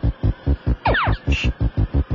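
Space Invaders-style marching sound of the invader fleet: a fast, steady run of low thuds, about five a second and quicker than just before, as the invaders speed up. About a second in comes a falling electronic zap, then a short hiss burst.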